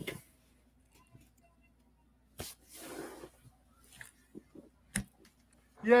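A quiet room with two short, sharp clicks, one about two and a half seconds in and one about five seconds in, and a soft hiss around three seconds.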